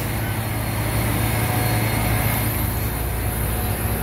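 Diesel truck engine idling with a steady low rumble.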